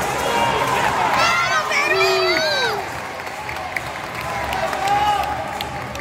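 Arena crowd noise, with several voices shouting and cheering over one another in the first three seconds, then settling to a lower murmur.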